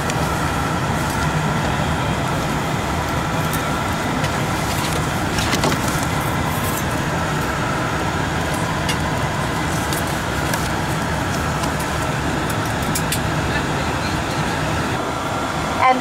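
Steady drone inside the cabin of a Bombardier Q400 turboprop airliner, with a faint steady whine over it. A few light rustles come from a paper safety card being handled.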